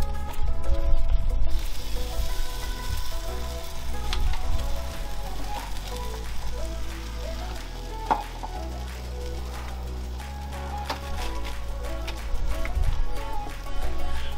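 Barbecue-sauce-glazed baby back ribs sizzling on the hot grate of a Weber Q1200 gas grill as they are lifted off with metal tongs, with a few sharp clicks of the tongs against the grate. Background music plays underneath.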